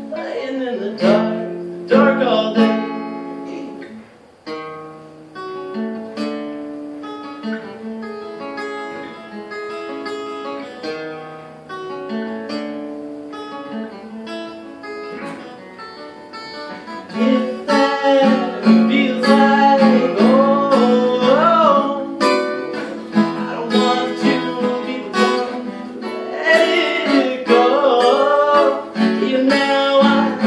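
Acoustic guitar being played: a softer picked passage that grows louder about halfway through.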